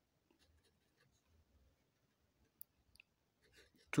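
Faint scratching and tapping of a pen writing on paper, with a brief sharp click a little past halfway.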